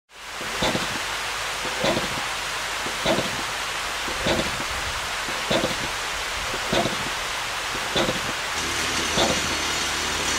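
Steady rushing of a mountain waterfall cascading down a rocky slope, fading in at the start. A soft pulse recurs a little less than once a second, and a low hum joins near the end.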